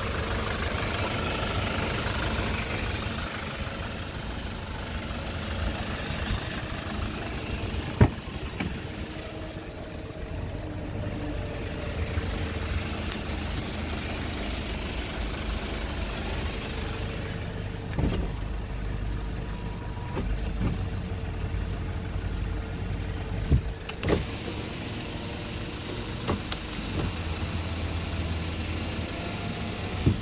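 Hyundai Porter truck's 2.5-litre four-cylinder diesel engine idling with a steady low rumble. A few sharp clicks or knocks stand out, the loudest about eight seconds in.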